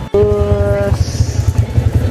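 A motorcycle engine idling close by, a quick low pulsing. A brief held tone sounds over it in the first second.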